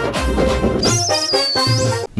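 Title-card music jingle for a TV segment change: loud music with a heavy low end, and a high wavering tone in its second half.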